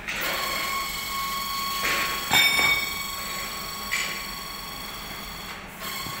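Metal struck three times, the loudest knock about halfway, each leaving a long, high ringing that hangs on. Tools are knocking on a freshly cast concrete-mixer drum ring as the moulding sand is broken away from it.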